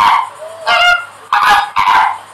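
Flamingos honking: a run of short goose-like honks, about four in two seconds.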